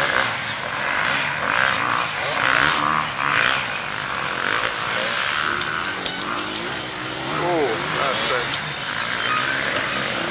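Enduro motorcycles running on a dirt track, engine notes rising and falling as the riders work through the course, with voices in the background.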